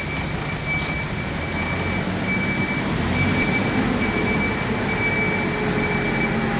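Loader's diesel engine running steadily, with a thin steady high tone over the engine hum.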